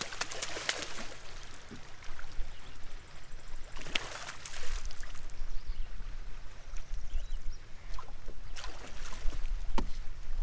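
Splashing and knocks as a hooked bass is played at the surface beside a bass boat and netted, with a few sharp strokes near the start, about four seconds in and near the end. A low rumble builds from about halfway.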